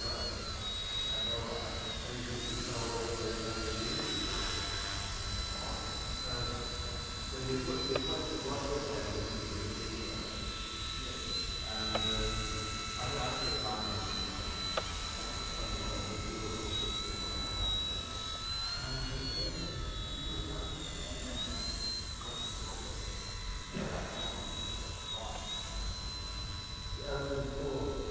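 Eachine E129 RC helicopter flying, its motor and rotors giving a steady high whine that briefly dips and rises in pitch several times as the throttle changes, mostly in the second half.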